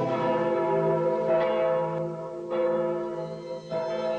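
Church bells ringing. The tones hang on, and new strokes come in about a second and a half in and again a little past halfway.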